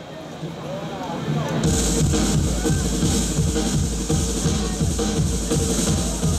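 Opening of a live electronic rock song over a stage PA: after a short quiet stretch with a voice, a steady electronic beat with bass comes in suddenly about two seconds in and keeps a regular pulse.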